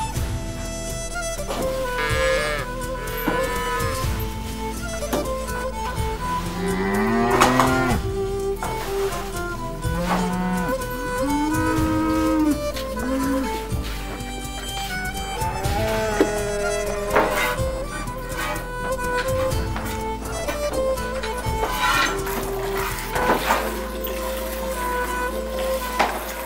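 Cattle mooing several times, mostly in the first half, over background instrumental music with long held notes.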